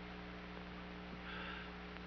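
Steady low electrical hum with a faint hiss, the background noise of an old TV film soundtrack in a gap between spoken lines.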